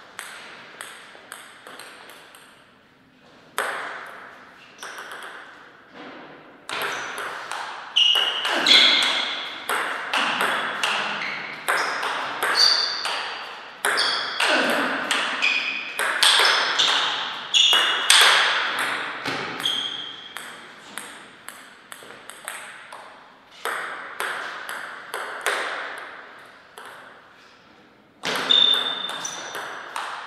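Celluloid-type table tennis ball clicking off the paddles and the table. There are a few scattered taps at first, then a quick run of hits in a rally from about seven seconds in, and more taps and hits near the end.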